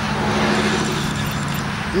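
A steady low engine hum at an even pitch, with a light hiss over it.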